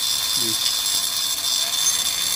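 Homemade flexible-shaft rotary grinder running with a steady high-pitched whine, its burr grinding inside the aluminium cylinder head of a two-stroke engine to port it.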